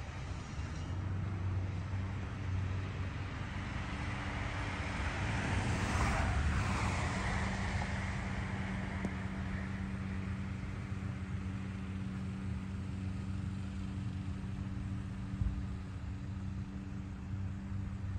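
Road traffic: a motor vehicle passes, swelling to its loudest about six seconds in and falling in pitch as it goes by, over a steady low engine hum.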